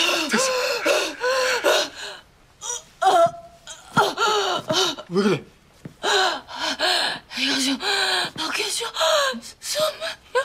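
A woman gasping and crying out in short, strained exclamations, again and again with brief breaks between.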